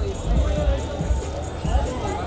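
People's voices talking over background music with a heavy bass, with light clicking or jingling on top.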